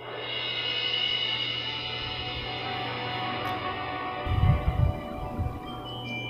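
Orchestral music fading in: sustained chords swell up and hold. A few deep thumps come about four seconds in.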